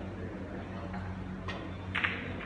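Two short, sharp clicks about half a second apart near the end, the second louder, over a steady low hum.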